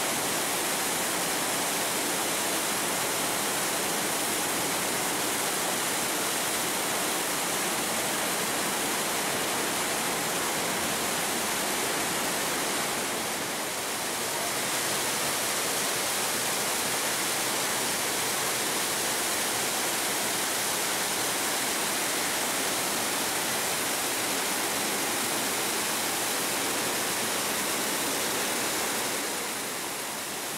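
Trümmelbach Falls, a glacial meltwater waterfall plunging through a narrow rock gorge, pouring in a dense, steady rush of white water, with a slight dip in level about halfway through.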